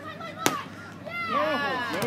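A single sharp smack of a beach volleyball being hit, about half a second in. Then, from about halfway through, several voices shout and cheer loudly together as the rally is won.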